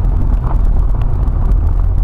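Jeep driving slowly over a muddy gravel trail, heard from inside the cab as a steady low rumble of engine and tyres, with a few faint knocks.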